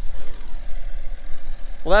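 Tractor engine idling, a steady low rumble.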